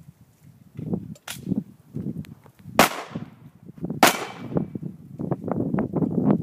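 Two loud handgun shots about a second and a quarter apart, each trailing off in an echo, with fainter knocks and rumble around them.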